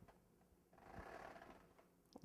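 Near silence: room tone, with one faint, soft noise lasting about a second, starting about a second in.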